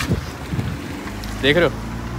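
Low, steady rumble of a car engine idling close by, with wind noise on the microphone.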